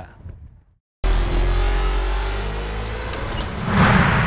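Whooshing sound effect for an animated logo: it starts abruptly about a second in with a deep rumble under a slowly rising tone, and swells to its loudest near the end.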